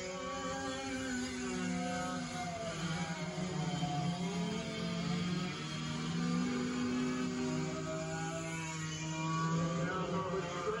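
Several racing go-kart engines running together, their pitches rising and falling as the karts speed up and back off around the track.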